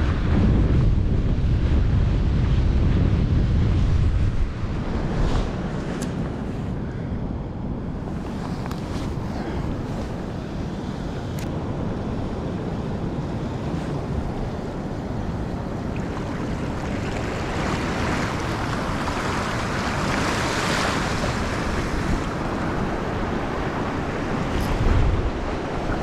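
Wind buffeting the microphone over small waves washing onto a sandy shore. A heavy low wind rumble for the first four seconds or so, then a steadier hiss of wind and lapping water that swells a little in the second half.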